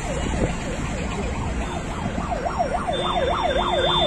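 A yelping siren rises and falls in pitch about three times a second over the low rumble of road traffic. It grows louder about three seconds in, joined by a steady high tone.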